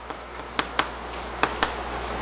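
About five short, sharp taps spread over two seconds, the loudest one a little past halfway.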